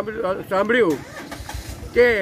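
Low, pulsing rumble of a vehicle engine running, coming in about a second in as a man's speech stops.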